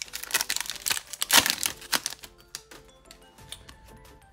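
Foil trading-card pack wrapper being torn open and crinkled, densest and loudest in the first two seconds, then a few lighter clicks and rustles as the cards are slid out.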